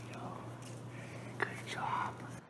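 Faint, whispery voices on a played-back home video's soundtrack over a steady low hum, with a sharp click about a second and a half in and a louder voice near the end.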